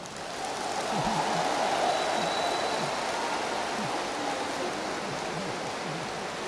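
A large audience applauding, the sound swelling over the first second or two and then slowly dying down.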